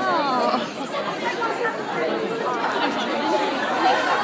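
Crowd chatter: many voices talking over one another.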